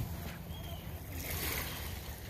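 Shoreline ambience: a steady low rumble of wind on the microphone over small waves at the water's edge.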